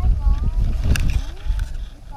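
Wind buffeting the microphone in gusts, a loud low rumble, with faint voices in the background.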